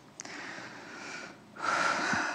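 A person's noisy breathing: a soft breath, then a louder one about one and a half seconds in.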